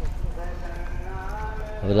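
Footsteps on dry, leaf-strewn ground while walking, with a voice in the background and a man speaking near the end.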